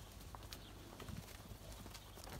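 Faint hoof steps and shuffling of heifers moving on straw-bedded ground, with a few soft knocks.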